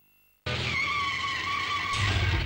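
A TV channel's promo sound effect: after half a second of near silence, a loud noisy burst comes in suddenly, with a steady high whine held over it.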